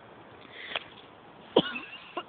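Dogs at rough play over a rope toy. One dog gives a single short, sharp bark about a second and a half in, the loudest sound here, after a softer scuffle and click.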